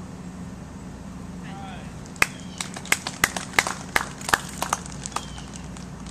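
Scattered applause from a small gallery of golf spectators after a putt. It is about a dozen sharp, uneven claps over roughly three seconds, starting about two seconds in.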